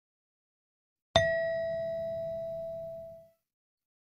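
A single bell-like chime, struck once about a second in and ringing out over about two seconds: the cue tone before the next question of a listening test.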